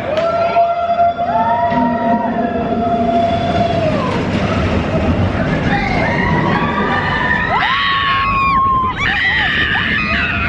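Several roller coaster riders screaming in long, held, wavering cries, overlapping one another, with a sharp rising scream near the end, over the steady rumble of the Expedition Everest coaster train.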